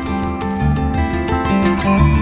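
Background music led by guitar, over a steady low beat.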